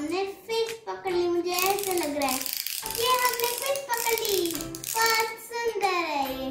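A young child singing in a sing-song voice, with long held notes that slide up and down and short breaks between phrases.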